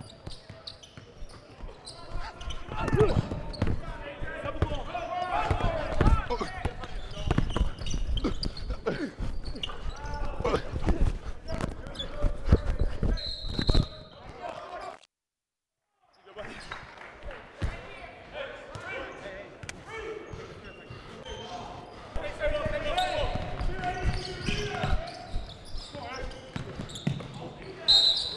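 A basketball dribbled and bouncing on a hardwood gym floor during play, with voices echoing in the large hall. The sound cuts out completely for about a second about halfway through.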